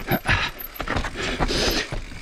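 Full-suspension Evil Wreckoning mountain bike rolling fast down a rocky dirt trail: tyre noise on dirt with chain and frame rattle and irregular knocks over rocks.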